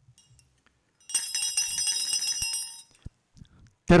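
Altar bells rung once, a cluster of small bells ringing with several high, sustained tones for under two seconds, starting about a second in. At this point in the Mass the bells mark the epiclesis, the calling of the Holy Spirit down on the bread and wine.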